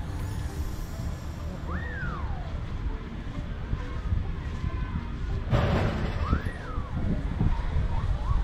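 Wind buffeting the microphone as a steady low rumble. Twice, about four seconds apart, a high call sweeps up and then falls away, and there is a short rush of noise between them.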